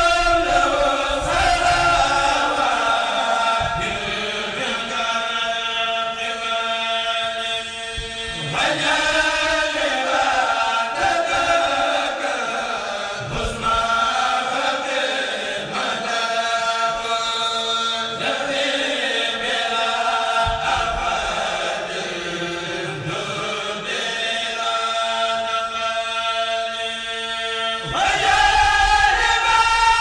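A kourel, a group of chanters, singing a Mouride khassida together in unison. They chant long, sustained melodic phrases with no break.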